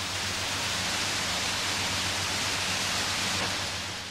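Steady hiss of falling water spray over a low, steady hum, fading out near the end.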